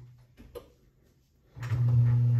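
Bread machine's kneading motor hum dies away to near silence, with a faint tap about half a second in, then the steady motor hum starts up again near the end.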